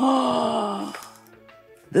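A man's voice making a drawn-out, falling "ooh" that fades away over about a second and a half.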